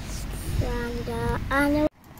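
A high singing voice holding three short notes in turn, over a low background rumble, cut off suddenly just before the end.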